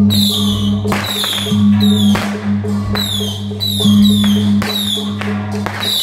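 Taiwanese beiguan procession music: suona-led ensemble with gongs and cymbals struck in a steady repeating beat.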